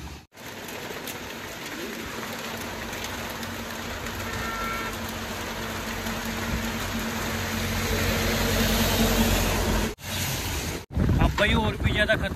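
Heavy monsoon rain with the hiss of traffic on the wet road, including a truck passing, growing louder until about nine seconds in. The sound breaks off twice near the end, and then voices begin.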